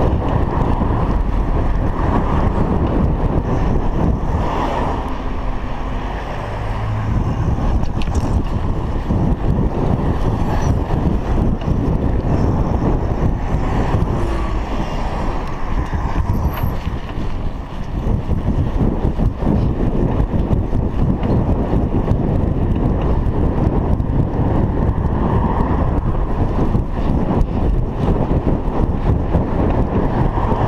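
Wind buffeting a chest-mounted action camera's microphone on a moving bicycle: a steady, loud, low rushing noise.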